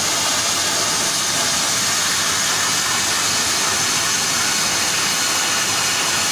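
Plasma arc of an Apmekanic SP1530 Maxcut CNC plasma cutting table cutting steel plate: a steady, loud, high hiss.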